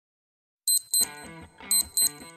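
A short intro jingle: two pairs of high-pitched electronic beeps, the pairs about a second apart, over a quiet electronic tune. It starts after about half a second of silence.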